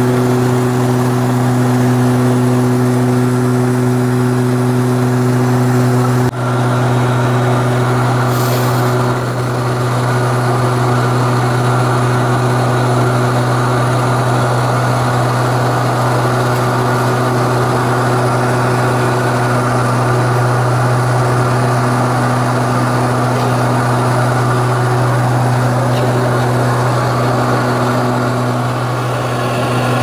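Steady drone of a turboprop airliner's engines and propellers heard from inside the passenger cabin: a strong low hum with a few steady tones over it. A brief dip with a click about six seconds in.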